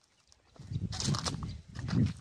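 Footsteps crunching over dry brush and stony ground, with crackling of dry twigs, starting about half a second in.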